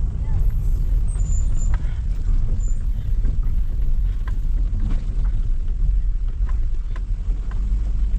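Car driving on a bumpy dirt road, heard from inside the cabin: a steady low rumble of engine and tyres, with scattered light knocks and rattles as it goes over the rough surface.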